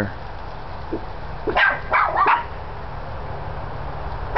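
A dog barking: three short barks in quick succession about a second and a half to two and a half seconds in, over a low steady hum.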